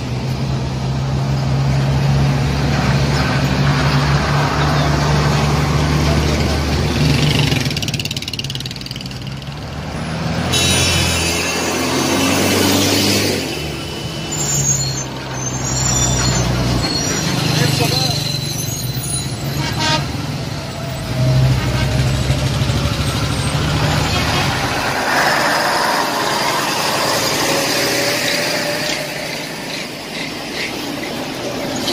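Heavy military trucks and armoured vehicles in a convoy, diesel engines running as they roll past. A high tone sounds repeatedly from about eleven to fourteen seconds in, and briefly again later.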